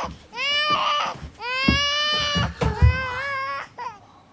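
Three long, high-pitched crying wails of about a second each, each rising at the start and then held, with a few short knocks in between.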